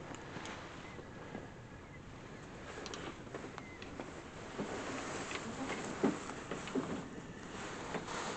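Rustling of clothing and small clicks as gear is handled, then a run of soft knocks on a wooden bench in the second half as a scoped rifle is picked up and settled on its rest. A steady hiss of wind against the shed runs underneath.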